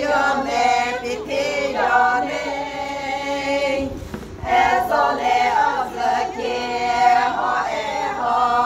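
A group of Naga women singing together unaccompanied, with a brief pause between phrases about halfway through.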